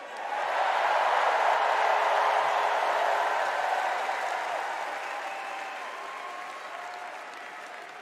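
Large arena crowd cheering and applauding, swelling up quickly at the start and slowly dying away.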